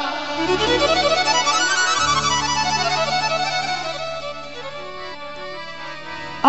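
Instrumental interlude in a Rajasthani devotional bhajan. A keyboard melody in a violin-like voice climbs up and then comes back down over a steady harmonium drone, and the music fades toward the end.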